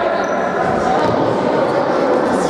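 Indoor futsal play in a large, echoing sports hall: players' voices calling out, and a ball being kicked and bouncing on the wooden floor.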